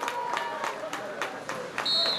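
Scattered clapping from a small crowd of spectators, about four claps a second, with faint voices behind it and a short high-pitched tone near the end.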